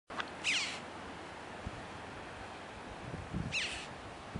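A bird gives two short, high calls that fall in pitch, about three seconds apart, over a steady background rush of noise with a few faint low bumps.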